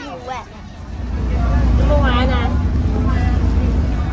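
A child's voice briefly at the start, then a loud, steady, deep rumble that builds about a second in and holds, with a short bit of speech over it near the middle.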